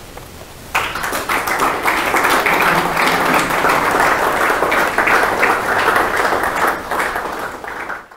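Audience applauding, starting under a second in as a dense patter of many hands clapping and easing off near the end.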